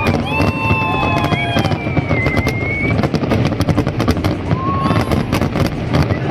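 Fireworks display: dense crackling and bangs from bursting aerial shells over a low rumble, with long whistling tones over them, mostly in the first half.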